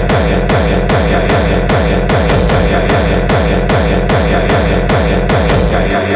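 Hardcore techno track: a fast, steady kick drum beat, each kick dropping in pitch, under a dense layer of synths.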